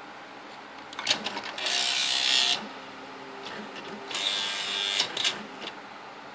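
Smith Corona SL 575 electronic typewriter powering up and running its start-up movement: a few clicks, then the mechanism's motor runs for about a second, light ticks, and the motor runs again for about a second, with a few more clicks near the end.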